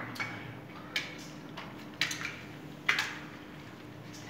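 Crockery clinking: cups, mugs and glasses tapped or set down on saucers and a tiled floor, four short sharp clinks about a second apart, the last the loudest with a brief ring, over a faint steady hum.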